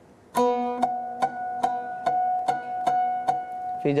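Oud plucked with a plectrum: a strong opening note about a third of a second in, then the same note picked over and over, about two or three times a second, each pluck ringing on.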